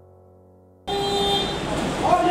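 Soft piano music fading out, then a sudden cut to loud street sound: a short, steady car-horn tone, followed by voices.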